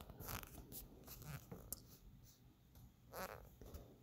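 Near silence: room tone with a few faint, brief rustles of hands handling and smoothing a felted wool piece.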